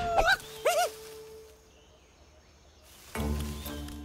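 A couple of short wordless vocal squeaks from a cartoon character, gliding up and down in pitch, in the first second. Then a quiet gap, and background music comes in at about three seconds.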